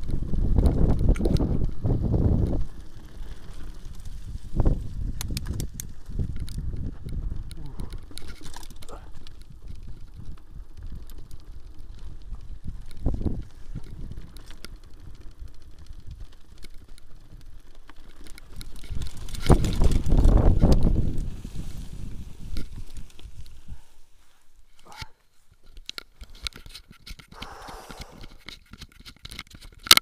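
Mountain bike rolling down a grassy dirt trail, heard from a handlebar-mounted camera: wind rumble on the microphone, loudest at the start and for a couple of seconds about two-thirds through, with the rattle and clicks of the bike going over bumps. It goes quieter near the end, and a sharp knock closes it as the camera is handled.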